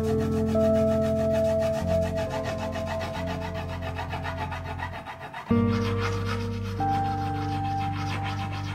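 A hand-held stone rubbed back and forth over a surface, giving a steady dry rub, under background music of held chords that change about five and a half seconds in.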